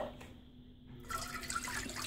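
Liquid poured from a bowl into a steel saucepan of milk, the pour starting about a second in.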